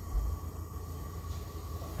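Steady low kitchen hum with a faint, steady high whine, and a soft low bump just after the start.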